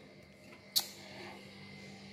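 A single short, sharp click about three quarters of a second in, over quiet room tone with a faint steady low hum.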